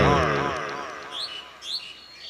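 A man's drawn-out, wavering mock roar fades out over the first second. A few short, high bird chirps follow near the end.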